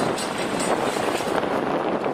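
Car driving past at low speed, a steady rush of engine and road noise mixed with wind buffeting the microphone.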